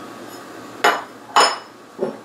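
Two hard clinks about half a second apart, the second louder with a brief ring, as a glass jar is handled on a kitchen counter.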